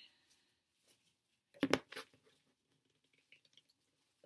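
Plastic clicks from the parts of a clamp-on phone holder being handled and twisted together, with a short cluster of sharper clicks about two seconds in.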